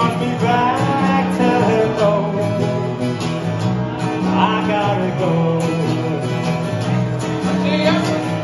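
Live acoustic music: two steel-string acoustic guitars strummed through a PA, with a man singing the melody over the chord changes.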